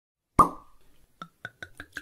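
A wine cork pulled from a bottle with one sharp, loud pop, then wine glugging out of the bottle in quick pulses about six a second, starting a little over a second in.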